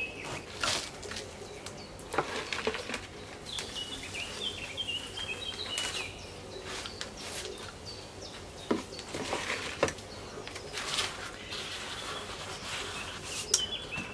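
Potting soil being scooped from a bag and tipped into a large plastic pot, with short scraping and rustling sounds throughout. A small bird chirps in the background, with a quick run of chirps from about 3 to 6 seconds in.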